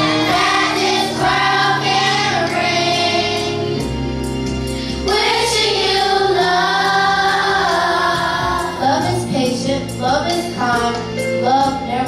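Children's choir singing, led by a girl soloist on a handheld microphone, over an instrumental accompaniment with a steady beat.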